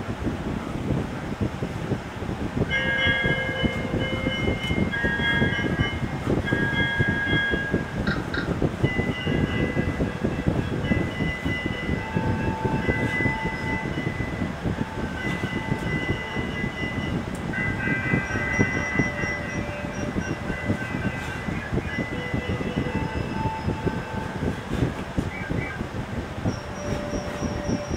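Steady loud rumbling noise with high squealing tones that come and go at shifting pitches, each lasting about a half second to a second and a half.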